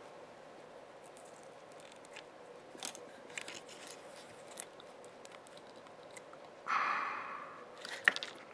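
Quiet soldering work on a circuit board: scattered small clicks and crackles as a chisel-tipped soldering iron is held on a capacitor pad, over a faint steady hum. A short breathy hiss comes about seven seconds in.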